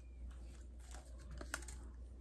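Light clicks and taps of wooden Christmas ornaments and packing being handled, with a quick cluster of sharper clicks about one and a half seconds in, over a low steady hum.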